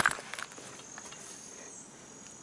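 Crickets chirring outdoors: a thin, steady, high-pitched trill over faint background noise, with a few light clicks about a third of a second in.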